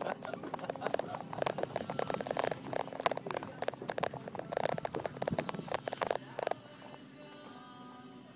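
Quick footsteps and rustling handling noise from a hand-held phone carried while walking fast, a dense run of knocks and scuffs that stops suddenly near the end, leaving faint background music.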